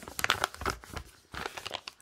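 A sheet of paper rustling and crinkling as it is handled, in two clusters of short irregular crackles.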